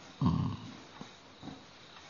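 A short throat sound from an elderly man, heard once about a fifth of a second in and lasting under half a second. It is low-pitched and not a word, followed by faint room noise.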